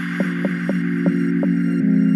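Electronic tech house music with no beat: a held low synthesizer chord with short plucked synth notes repeating over it, the chord changing near the end.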